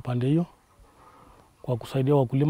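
A man speaking, pausing for about a second in the middle before going on.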